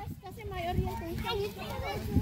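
Children's voices chattering and calling over a low rumble of wind on the microphone.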